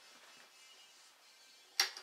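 Quiet room hiss, then near the end a single sharp click: the power switch of a bench DC power supply being turned on.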